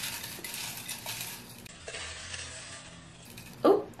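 Folded paper slips stirred by hand in a glass bowl, rustling with light ticks of paper and fingers against the glass, quieter after the first couple of seconds. A short "oh" near the end.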